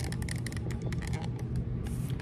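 Handling noise from a phone held close to the microphone: many small irregular clicks and rustles over a steady low hum.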